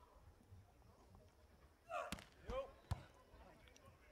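A beach volleyball struck twice by hand, two sharp slaps less than a second apart, the serve and then the receiving pass, with short shouts from the players around the first hit and a dull thud in between. The first half is quiet.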